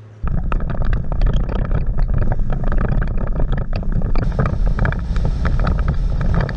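Wind buffeting a bonnet-mounted camera's microphone on the moving Mercedes G-Wagon, loud and gusty, over the low rumble of the vehicle driving on the road. It cuts in abruptly just after the start and turns hissier about four seconds in.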